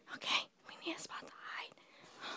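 Whispered speech: short, breathy, hushed words.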